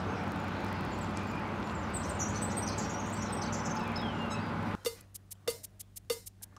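Outdoor ambience: a steady low hum with small birds chirping. Near the end it cuts suddenly to sharp clicks, each with a short ringing tone, about one every two-thirds of a second.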